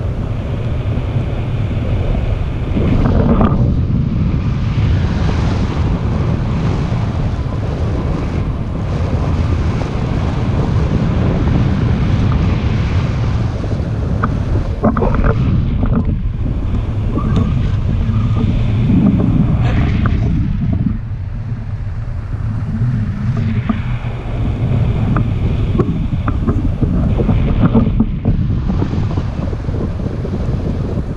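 Airflow buffeting the microphone of a pole-held camera on a tandem paraglider in flight: a loud rushing wind noise that rises and falls, with a few light knocks.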